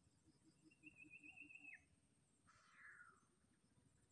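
Faint animal calls. A thin warbling trill starts about half a second in, holds for about a second and ends in a quick downward slide. A short falling call follows about two and a half seconds in.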